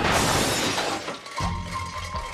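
Car collision: a loud crash with glass shattering, dying away over about a second and a half, right after a tyre skid. Music comes in near the end.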